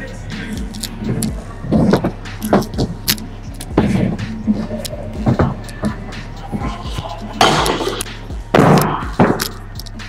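Stunt scooter riding on wooden skatepark ramps: wheels rolling, with repeated knocks and clatters of the deck and bars, and two louder rushes of rolling noise near the end. Music plays in the background.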